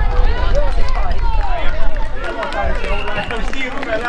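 Several voices shouting and calling over one another at a small-sided football game, with a steady low rumble underneath.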